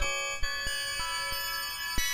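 Music played through the Cascade reverb plugin: a wash of many sustained, steady tones with light note strikes every third of a second or so. The texture changes about half a second in as the plugin switches to the next preset.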